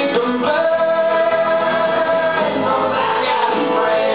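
A country song: a voice singing over strummed acoustic guitar, holding one long note from about half a second in for nearly two seconds.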